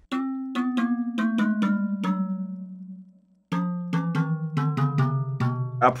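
Metallic, bell-like keyboard notes from an industrial-sounding layer of the pre-chorus, played on their own. They are struck in a quick even rhythm of about four or five notes a second, and each run steps gradually lower in pitch. The first run rings out after about two seconds, and after a short gap a second run starts about three and a half seconds in.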